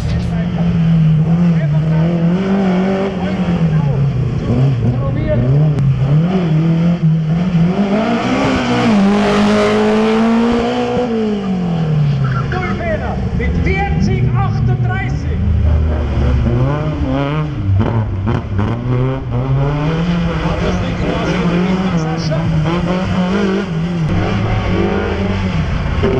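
Slalom race cars' engines revving hard and dropping back again and again as they accelerate and brake through the cones. Tyres squeal briefly about halfway through.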